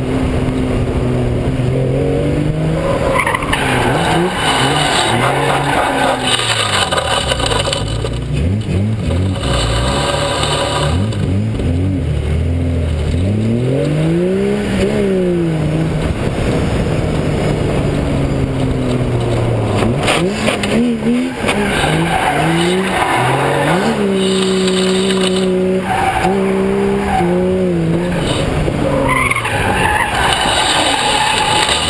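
A BMW E30 325's straight-six engine revving up and down repeatedly while the tyres squeal in a drift. Near the middle there is a long rise and fall in engine pitch, and later the revs hold steady briefly before dropping.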